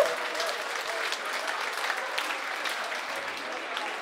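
Audience applause: many people clapping at a steady level.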